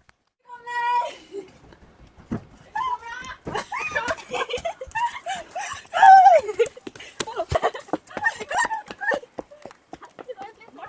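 Young women's voices calling out and squealing, the words unclear, with one short held high note about half a second in.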